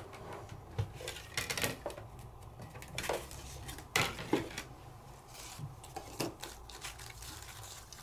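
Scattered light clicks and taps of die-cutting plates and a thin metal die being handled and pulled apart on a table to free the cut paper.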